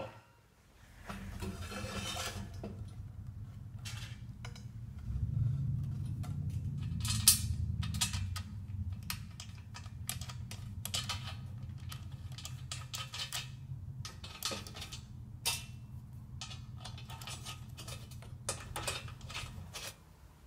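Hex key and bolts clinking and scraping against a sheet-steel table top as a band saw is bolted down, in irregular short clicks, over a steady low hum.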